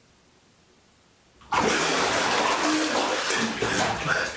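Near silence, then about a second and a half in a sudden loud splashing of bathwater that keeps going as a person surges up out of a filled bathtub, water sloshing and streaming off him.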